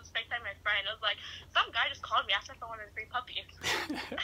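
A girl's voice talking quickly through a phone's speaker, then a short breathy laugh near the end.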